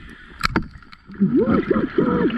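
Underwater, a sharp click about half a second in, then three short muffled hums, each rising and falling, typical of a diver vocalising into the regulator mouthpiece between breaths.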